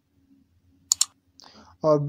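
Mouse-click sound effect: two quick, sharp clicks close together about a second in.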